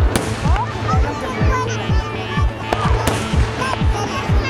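Fireworks display: shells bursting with two sharp bangs, one just after the start and one about three seconds in, over loud music with a steady beat about twice a second and voices in it.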